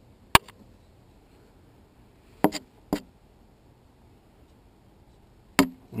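Four sharp clicks and knocks as a grabber pickup tool carrying a camera probe is worked down into the gearbox against metal. The loudest comes about a third of a second in, two follow close together around halfway through, and one comes just before the end.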